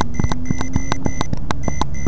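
Rapid electronic beeping, about three short beeps a second, over irregular crackling clicks and a low steady hum.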